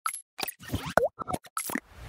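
Cartoon-style pop and bloop sound effects from an animated logo intro. It is a quick run of about six short pops, and the loudest one near the middle bends in pitch.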